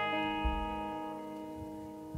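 Live country-tinged acoustic rock band music: a guitar chord rings out and slowly fades, with a low thud about half a second in.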